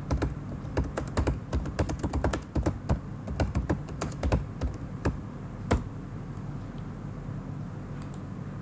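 Computer keyboard being typed on: a quick, irregular run of keystrokes that stops about six seconds in, leaving a low steady hum.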